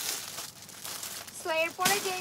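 Crinkling and rustling of something being handled for about the first second and a half, then a woman's voice comes in, with one sharp click shortly before the end.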